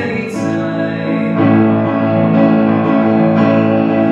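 Grand piano playing sustained chords in a slow song, with a young man's singing voice.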